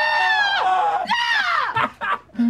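High-pitched human screaming, wavering and bending in pitch, a fright reaction to a pumpkin-headed figure. A second scream overlaps about halfway through, and the screaming dies away shortly before the end.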